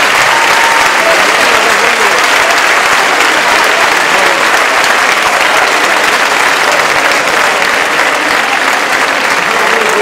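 Large audience applauding steadily after an orchestral and choral performance, with a few voices calling out over the clapping.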